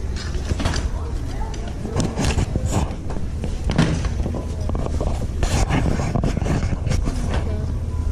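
Shop-floor bustle: a steady low rumble under indistinct voices, with scattered clicks and rustles as packaged items are handled on a store shelf.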